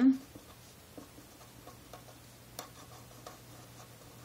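Felt-tip marker writing on paper: a run of faint, short scratchy strokes and taps.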